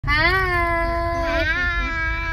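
A young girl's long drawn-out vocal note, held at a steady pitch with a short wavering dip a little past halfway, over the low rumble of a car's cabin.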